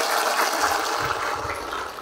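Audience applause, fading away in the second half.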